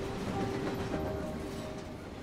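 A steady low rumble, like the interior of a moving vehicle or train, with a few soft sustained music tones held above it.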